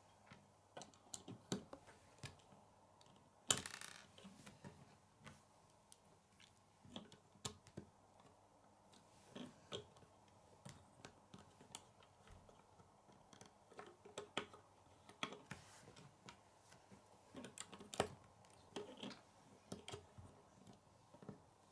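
Plastic Lego bricks clicking and tapping as they are handled and pressed together, in scattered quiet clicks. A short rattle about three and a half seconds in and a sharp click near the end are the loudest.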